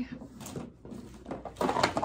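Rustling and a few light knocks as a spiral-bound planner sticker book is handled and lifted.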